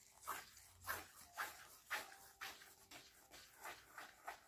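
Faint swishing of fingers sweeping through fine sand on a plate, in short repeated strokes about twice a second.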